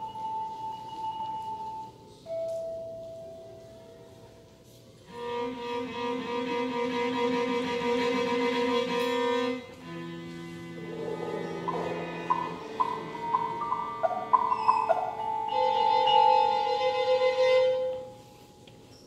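Contemporary chamber music for violin, cello and mallet percussion: slow held notes and chords that swell and fade, with a quick scatter of short notes about midway.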